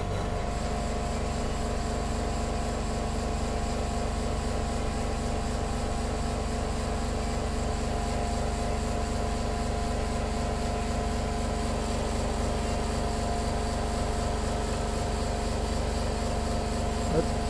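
Electric saree polishing machine running steadily, its motor-driven rollers drawing a saree through, with an even hum and whir.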